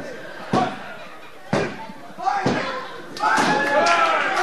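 A referee's three-count: the referee's hand slaps the wrestling ring mat three times, about a second apart. Loud shouting from voices follows near the end.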